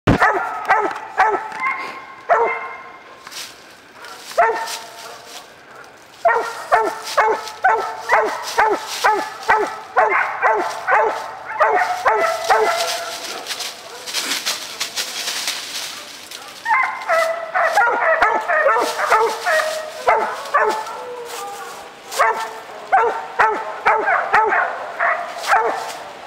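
A three-and-a-half-month-old hound puppy barking up at a tree: runs of short, fast, high barks, about two or three a second, with a couple of pauses. During the pause midway there is rustling in dry leaves as it moves.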